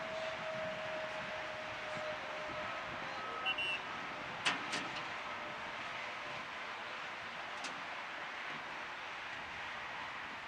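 Outdoor field ambience: a steady hiss of wind and distant road traffic, with a few sharp knocks around the middle.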